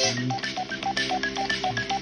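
Instrumental band music: an electronic keyboard plays a quick, even run of short bleeping notes, about five or six a second and alternating between two pitches, over held bass notes.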